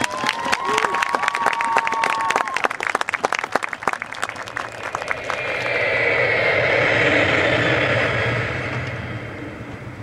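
Audience applause in a pause in the music: quick scattered claps for the first half, with a single held tone for a couple of seconds near the start, then a softer wash of noise that swells and fades away.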